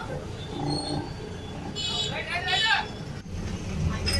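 A bus engine running as the bus drives along, heard from inside the cabin as a steady low rumble, with people's voices around it, one of them calling out about two seconds in.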